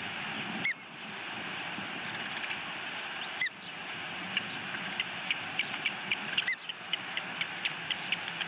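Osprey calls during a feeding at the nest: three louder rising chirps about three seconds apart, then from the middle on a rapid run of short peeps, several a second, typical of chicks begging for food, over a steady background hiss.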